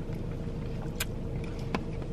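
Steady low hum of a car's cabin with the engine running, with two small clicks about one second and just under two seconds in.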